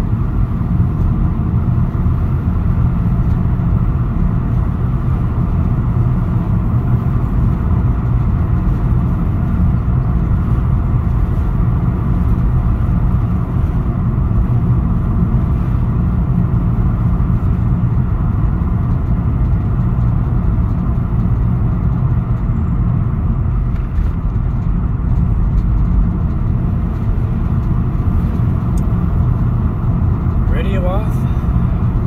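A car driving steadily, heard from inside the cabin: an even, low rumble of engine and road noise.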